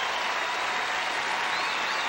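Large theatre audience applauding steadily after a stand-up comedy set.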